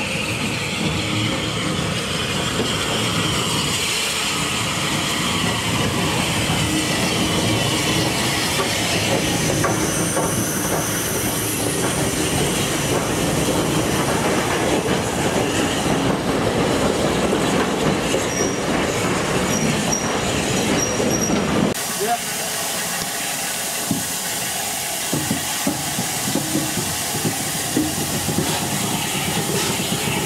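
Bulleid Battle of Britain class steam locomotive 34070 Manston and its coaches running into a station, with steady rumbling, wheels clattering on the rail joints and a thin squeal from the wheels about two-thirds of the way through. After a sudden cut, the locomotive stands with steam hissing and a few sharp clicks.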